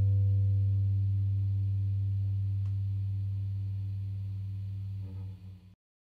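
The last low note of an electric guitar piece ringing out and slowly dying away, then cut off shortly before the end.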